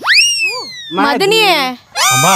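A comic sound effect: a quick upward swoop to a high whistle-like tone that slides slowly back down over about a second. A short burst of voice follows.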